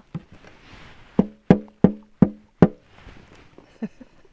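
Frozen river ice making a run of five sharp knocks, each with a short hollow ringing tone, coming about three a second, then one fainter knock near the end.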